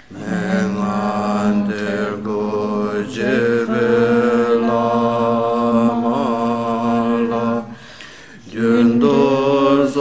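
Tibetan Buddhist chanting: a voice sings a mantra or prayer in long, steady held notes, with a short pause for breath about eight seconds in.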